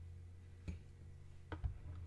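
Light clicks of a cake slice and knife being set down on a ceramic plate: one click, then two close together about a second later, over a steady low hum.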